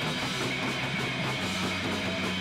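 Live band playing loud, continuous rock: distorted electric guitar through an amp over a drum kit.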